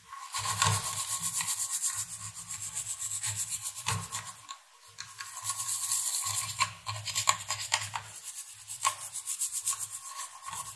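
A small brush scrubbing a router's circuit board in rapid back-and-forth strokes, with brief pauses about halfway and near the end. The board is being brushed clean of conductive dirt that may have been bridging its tracks and components.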